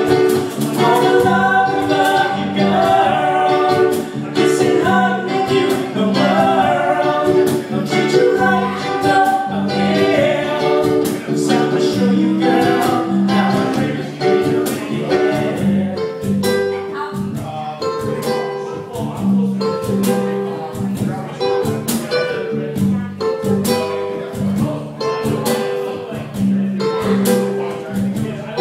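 A live acoustic band playing: strummed ukulele, U-bass and cajon keeping a steady beat, with sung vocals over the top.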